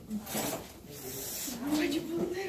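Voices talking in a classroom, with a brief hiss about half a second in.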